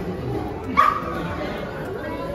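A dog gives one short, sharp bark a little under a second in, over the chatter of a crowded room.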